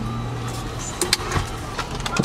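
A vehicle idles with a steady low hum, heard from inside the cabin. A few light clicks and rustles come about a second in, as a paper food bag is passed in through the driver's window.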